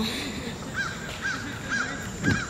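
A bird calling: a short, arched call repeated three or four times, about half a second apart, starting a little under a second in.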